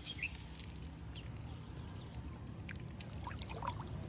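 Faint sloshing and trickling of shallow water at the shoreline as a large redfin is released and swims off, with a few faint bird chirps.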